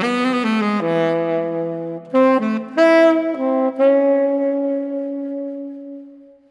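Saxophone playing a short melodic phrase of several notes, ending on a long held note that fades away at the very end.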